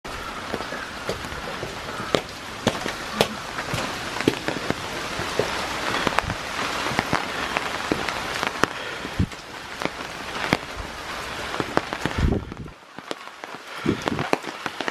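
Steady rain, with frequent sharp ticks of single drops landing close by. The hiss drops away near the end.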